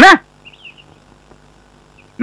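The last syllable of a man's speech, then a quiet pause with a faint bird chirp about half a second in.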